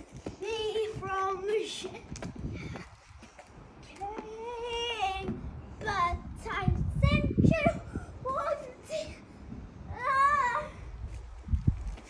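A young child's voice in drawn-out, wavering high-pitched calls, a few at a time with short gaps between.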